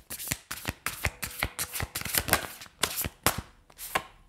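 A deck of tarot cards being shuffled by hand, cards slipped from one hand onto the other in a quick irregular run of soft clicks and slaps.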